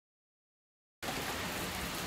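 Silence for about a second, then steady rain falling on a pond's surface cuts in suddenly.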